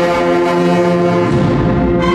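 Processional brass band of trumpets, trombones and low brass holding a long sustained chord in a march. Some of the lower notes drop out about two-thirds of the way through.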